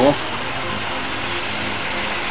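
Water from a pumped drip tube running and trickling down through the felt pockets of a vertical garden, a steady even wash.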